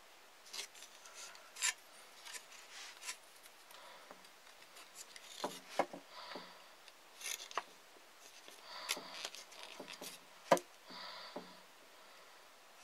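Small wooden trigger peg and cord being worked into the hole of a homemade wooden mole trap: scattered light clicks, scrapes and rubbing of wood and string, with one sharper knock near the end.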